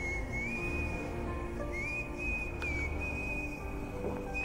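A high, steady whistle-like tone that steps up to a slightly higher pitch and back down twice, over faint background music, with a few faint clicks.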